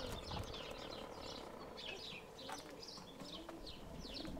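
Small birds chirping busily: a string of short, high, quickly falling chirps, several a second, fairly faint.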